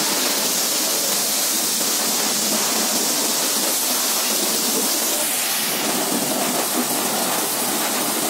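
High-pressure washer jet spraying water onto a motorcycle: a steady, even rush of spray.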